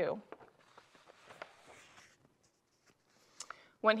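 Faint rustling and handling of paper sheets as a story page is turned and lifted, with a few small clicks.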